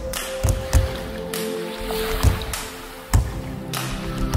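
Background music: held tones over a drum beat.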